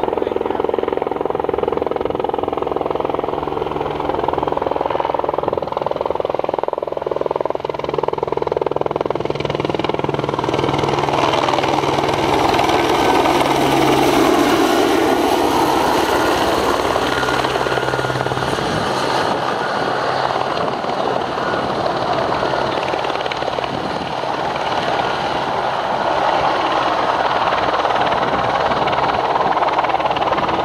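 Radio-controlled scale model helicopter, built as an AS350 Écureuil, in flight: its engine and rotor run continuously, the pitch rising and falling as it manoeuvres, a little louder near the end as it hovers close by.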